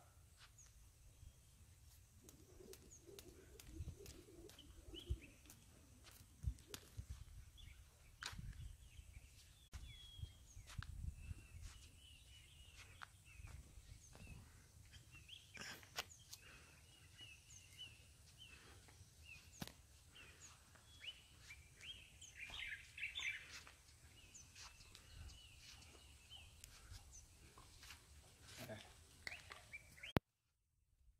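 Faint birds chirping, with scattered faint clicks and taps.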